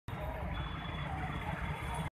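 Street ambience: steady road-traffic noise with indistinct voices in the background, and a faint thin high tone for under a second near the start.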